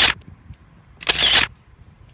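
Phone camera shutter sound repeating about once a second: one burst just at the start and another about a second in, each a short, loud shot of noise.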